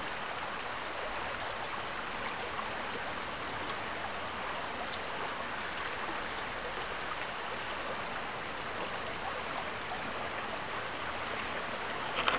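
A shallow creek running steadily over gravel and rocks, a continuous even rush of water with no distinct splashes.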